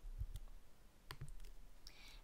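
A few faint clicks of computer keys, as a spreadsheet formula is closed and entered with the Enter key.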